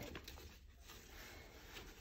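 Near silence, with faint rustling and light handling of a fabric lunch tote as its sides are folded and pressed together.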